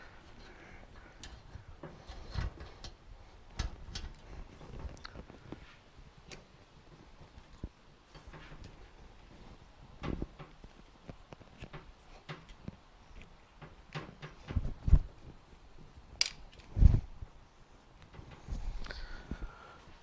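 Scattered metallic clicks and knocks as a motorcycle rear shock absorber is compressed by hand and worked onto its mounting stud on the frame. There are a few louder knocks in the second half.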